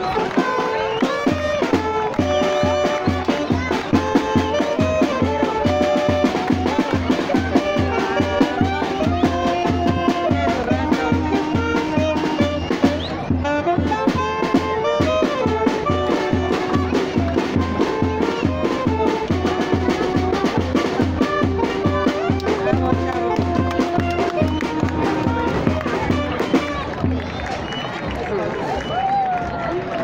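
Brass band music playing, with held trumpet and trombone notes over a steady low beat about twice a second.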